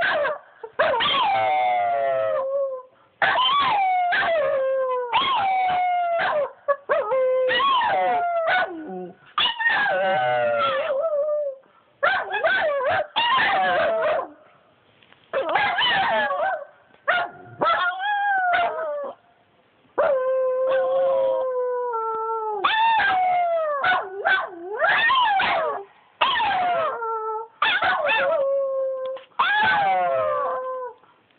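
Two small curly-coated dogs howling together: a long series of drawn-out howls, most of them falling in pitch, one after another with short breaks between.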